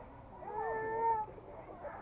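A person's voice calling out one drawn-out shout at a steady pitch, under a second long.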